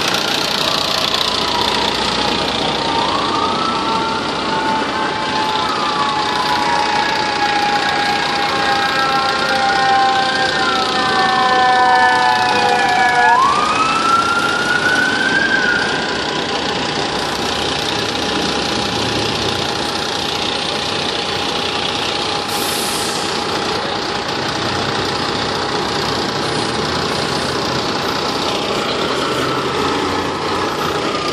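Fire-truck siren wailing in slow rising and falling sweeps from a few seconds in until about halfway through, loudest just before it stops. Underneath, the steady run of idling diesel fire-apparatus engines.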